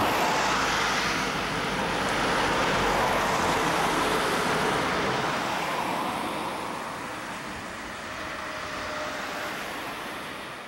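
Road traffic passing on a two-lane highway: a steady hiss of car and truck tyres and engines that slowly eases in the second half.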